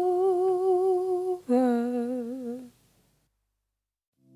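A solo voice hums two long held notes with vibrato, the second one lower, closing out a song. It stops a little under three seconds in and silence follows.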